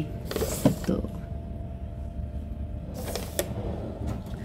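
Wooden drawer being moved by hand, making two brief scraping, creaking slides with small knocks: one about half a second in and another near the three-second mark.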